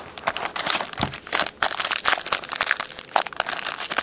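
Plastic wrapper of a trading card pack crinkling and crackling in the hands as it is handled and opened, with many irregular small clicks.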